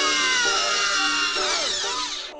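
A cartoon character's long shrill cry, gliding slowly down in pitch over background music.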